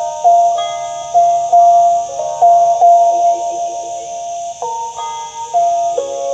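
Phin pia (Lanna stick zither) playing a slow melody of plucked, ringing, bell-like notes, a few per second, with a short pause about four seconds in.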